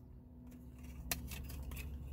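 Faint clicks and rustles of plastic novelty sunglasses and their paper price tag being handled and settled on the face, with one sharper click about a second in. A low steady hum runs underneath.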